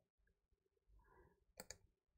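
Near silence: room tone, with two faint clicks in quick succession near the end, typical of a computer mouse being clicked.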